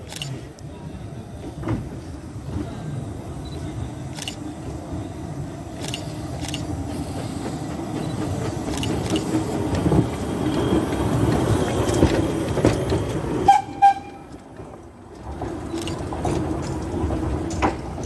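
Small narrow-gauge steam tank locomotive passing slowly close by, hissing steam from its cylinders, the sound building as it draws near. There is a short high toot about three-quarters of the way through.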